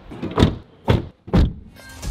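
Car doors being slammed shut: three heavy thumps about half a second apart.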